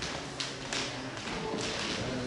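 A few light taps and knocks over an indistinct murmur of voices.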